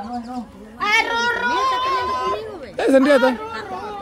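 Excited people's voices and chatter, with one high, drawn-out cry lasting about a second and a half, starting about a second in.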